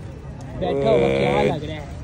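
A single moo from a head of cattle, one steady call about a second long.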